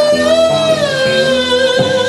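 Blues harmonica holding one long note that bends slowly down in pitch, over a guitar picking short plucked notes underneath.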